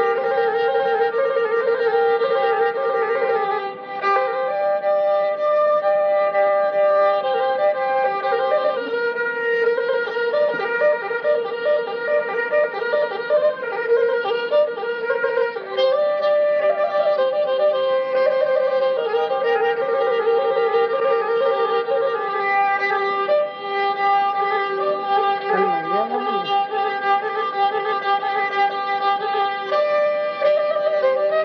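Pontic lyra (kemençe) playing a traditional melody of quick repeated notes over a steady drone.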